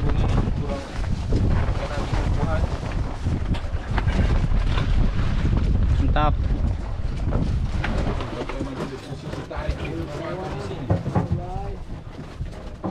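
Wind buffeting the microphone in a loud low rumble that eases after about eight seconds, with indistinct talk over it.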